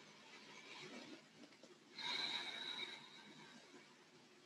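A person breathing slowly through the nose, faint: a soft breath in the first second, then a louder, longer breath starting about two seconds in that carries a thin whistling tone and fades out.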